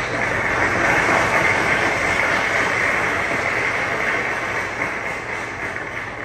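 Audience applauding: dense clapping that begins abruptly and slowly tapers off.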